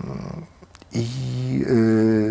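A man's drawn-out hesitation sounds: a low 'e' trailing off, a short pause, then a long, held 'iii' at a steady pitch from about a second in.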